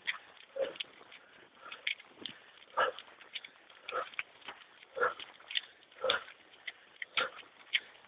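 Footfalls of a group of runners on a paved path: many light quick taps, with a louder thump about once a second.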